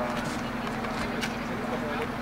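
A steady low hum from an idling Iveco Crossway LE city bus, under faint, indistinct talk.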